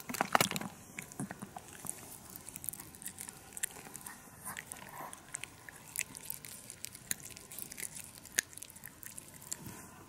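A Chihuahua biting and chewing on a hand-held green chew: irregular wet clicks and crunches, loudest about a quarter second in.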